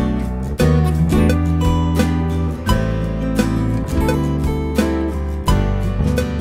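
Acoustic guitar strumming chords, recorded through a MOTU M4 audio interface, with sustained low bass notes underneath.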